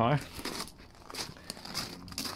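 Footsteps crunching on loose gravel, a few uneven steps.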